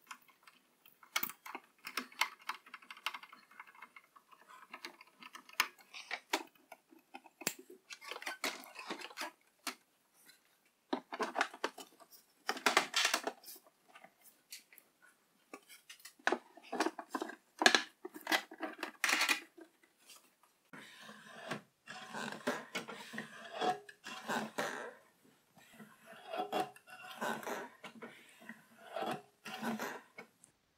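Hands fitting small plastic and metal parts to a miter saw: an irregular run of clicks, taps and scrapes, with louder, denser spells about halfway through.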